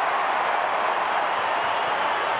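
Stadium crowd cheering a goal at an Australian rules football match: a steady, dense wash of crowd noise.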